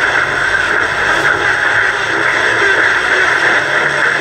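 Steady, even hiss from a Top House GH-413MUC boombox's AM radio tuned to 1639 kHz, as loud as the broadcast speech around it.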